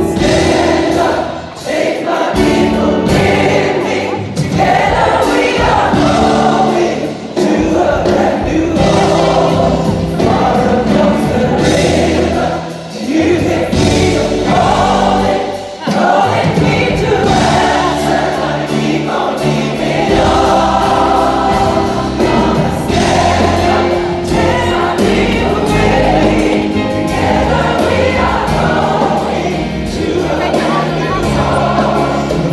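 Large gospel mass choir singing in full voice with a soloist at the microphone, over band accompaniment, in phrases with brief breaths between them.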